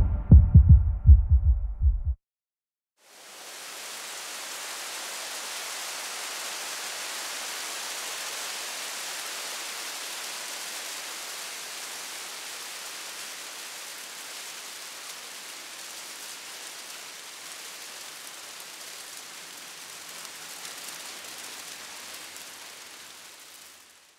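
Electronic music with a heavy beat that cuts off about two seconds in. After a second of silence, a steady crinkling hiss fades in and holds: the rustle of a floor full of foil emergency blankets. It fades out at the end.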